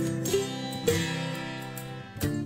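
Background music carried by a plucked guitar, with a new note struck about a second in.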